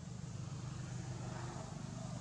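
A steady low rumble with faint background hiss, unchanging throughout.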